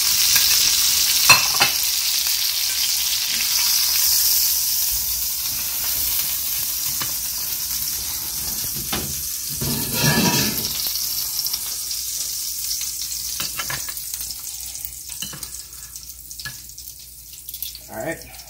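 Fat and garlic butter sizzling in a hot cast-iron skillet as a T-bone steak comes off the heat. There is a sharp click about a second in, and the sizzle slowly dies down toward the end.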